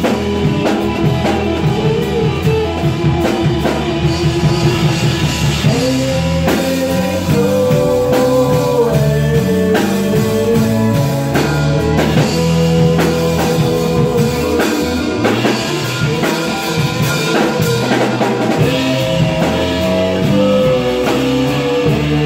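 Live rock band playing: electric guitar, bass guitar, keyboards and drum kit, with a held, bending melody line over the steady beat.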